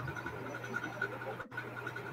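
A pause in speech filled with steady low electrical hum and faint background hiss over the call audio, cut by a brief total dropout about one and a half seconds in.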